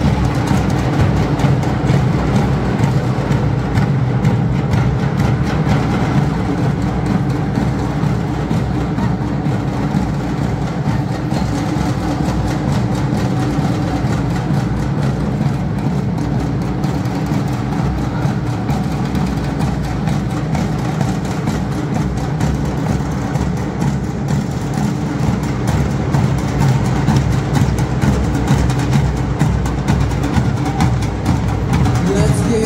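An ensemble of large double-headed drums, slung at the players' waists and beaten with sticks, playing fast, dense drumming at a steady loudness.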